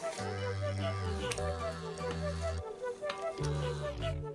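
Background music: long held bass notes under a quick, repeating run of short melody notes, at a steady pace.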